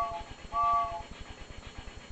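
Two short toots of a cartoon train-whistle sound effect from a children's number-train web game, each a steady three-note chord, the second about half a second in.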